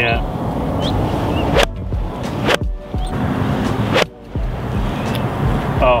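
Golf iron striking a ball off the turf with a sharp crack, over a steady background hum.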